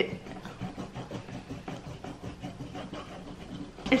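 Textured plastic rubbing peeler scrubbed quickly back and forth over a potato's skin on a wooden cutting board, a run of short rasping strokes.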